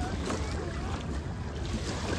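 Steady low rumble of wind on the microphone over shallow sea water lapping at the shore, with faint voices in the distance.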